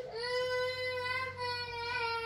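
A young child's long whining cry, one steady held note, the fussing of a child who wants a Pop-Tart.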